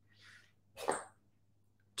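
A faint breath, then one short, sharp breath sound through the nose about a second in.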